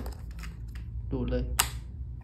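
Goojodoq GD12 stylus snapping magnetically onto the side of an iPad: one sharp click about one and a half seconds in.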